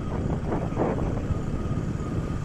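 Steady running noise of a road vehicle heard from on board while driving along a road, a continuous low rumble with a faint, even whine above it.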